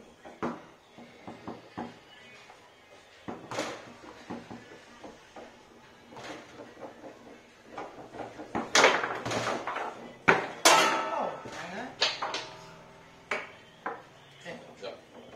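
Foosball played on a Fireball table: the hard ball clacking off the plastic men and the table walls, with rods knocking in their bearings. The hits come in a quick, loud flurry from about nine to eleven seconds in.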